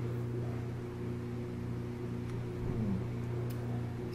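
A steady low hum of room machinery, with a couple of faint clicks as plastic binoculars and a metal multi-tool are handled.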